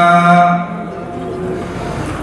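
Many men's voices chanting a religious ode in unison on one held note, which breaks off about half a second in, followed by a pause filled with low crowd and hall noise.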